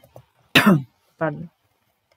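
A woman coughing and clearing her throat: a loud cough with a falling pitch about half a second in, then a shorter, quieter one just over a second in.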